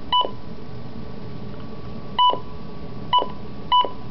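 Midland WR-100B weather radio giving four short, identical single-pitch beeps at uneven intervals as its buttons are pressed, over a steady hiss.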